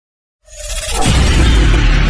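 Logo-intro sound effect with music. It swells up out of silence about half a second in and holds loud, with heavy bass.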